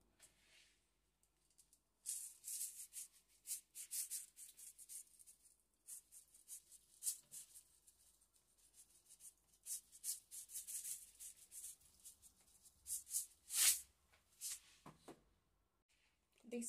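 Coarse sea salt shaken from a canister into a pot of beef and water: a long run of short, irregular, hissy shakes of the grains, starting about two seconds in, with the strongest shake near the end.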